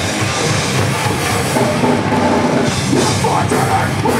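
Heavy metal band playing live at full volume: distorted electric guitars over a pounding drum kit, in a dense, unbroken wall of sound.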